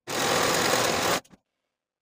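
Singer serger (overlock machine) running steadily as it overcasts the raw seam edge of a linen blouse piece, stopping after just over a second.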